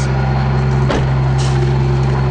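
A vehicle engine idling with a steady low drone, and a single knock about a second in.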